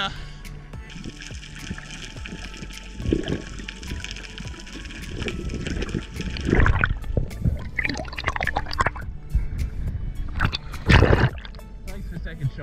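Background music over water sloshing and gurgling around a diver's camera as it moves between the surface and underwater, with louder splashing surges about six and a half and eleven seconds in.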